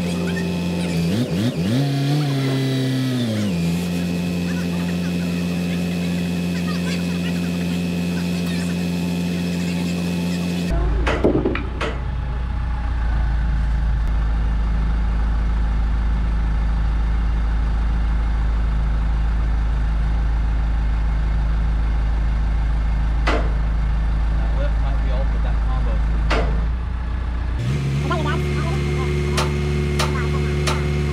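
A telehandler's engine running under load as its boom lifts a heavy framed wall, its pitch rising and falling briefly near the start, then holding steady.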